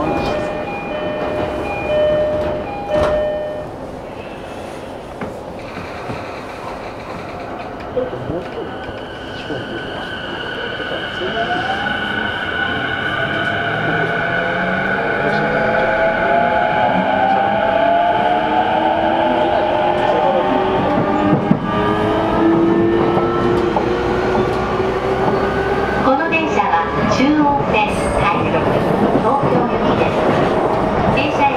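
JR East E233-series motor car (MoHa E233) traction motors and VVVF inverter whining as the train accelerates: from about ten seconds in, several pitched tones climb together and grow louder. A few short electronic tones sound near the start.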